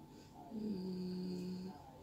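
A woman humming a long closed-mouth 'mmm' while thinking, about a second long, dipping slightly in pitch at the start and then held on one note.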